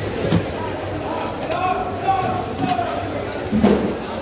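Indistinct background voices of people talking, with a few short knocks, the loudest near the end.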